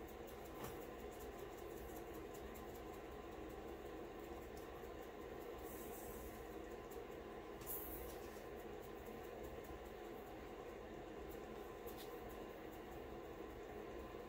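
Faint rustle and patter of fine glitter being poured onto a glue-coated tumbler and the parchment paper beneath it. It sits over a steady low room hum, with a few soft clicks.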